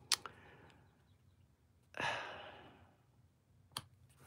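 A soft breathy sigh about two seconds in, fading over about a second, between light clicks of card stock being handled as an inner liner is set onto a card front.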